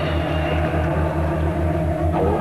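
Live rock band playing a fast, even bass pulse of about six beats a second, with a dense wash of band sound above it.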